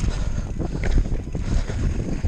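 Wind buffeting the microphone of a mountain bike's action camera as the bike rolls fast over a rocky trail, with tyres crunching on gravel and frame and chain rattling in quick irregular knocks.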